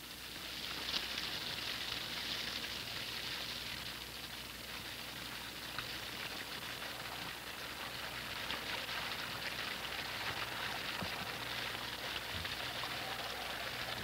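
Steady rain falling at night, an even hiss of drops with fine crackle throughout.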